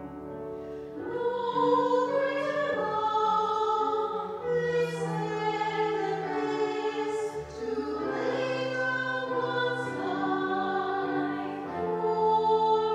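Choir singing a slow hymn, with long held notes that step from pitch to pitch.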